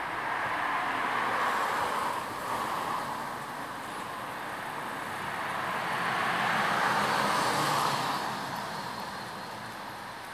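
Street traffic: two cars pass one after the other, each swelling and fading, the first about a second in and the second around seven seconds in.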